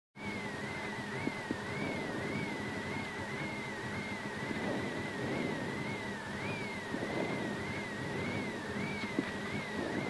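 Subaru Legacy RS rally car's turbocharged flat-four idling at a standstill, heard from inside the cabin, with a high warbling tone that rises and falls about twice a second.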